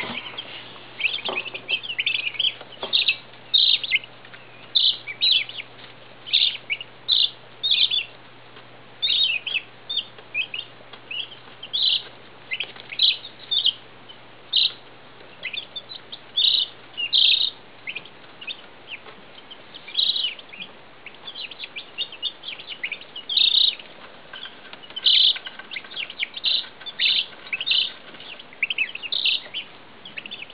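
A brood of Midget White turkey poults and Icelandic chicks peeping: a continuous stream of short, high-pitched peeps, several a second, overlapping from many birds.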